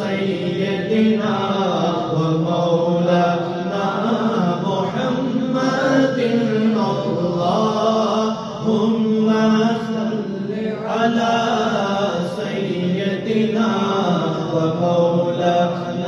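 Naat recitation: voices chanting in long, held melodic phrases with slowly bending pitch.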